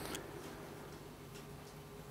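A few faint clicks from a laptop being operated, over a low steady room hum.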